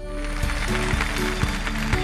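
Studio audience applauding under a music cue that has held notes and a steady beat of about two strokes a second.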